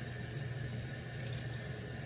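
Bathroom sink tap running steadily.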